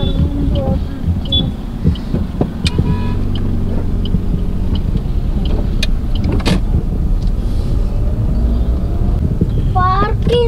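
Road and engine noise heard from inside a moving car's cabin: a steady low rumble, with a few sharp clicks and knocks.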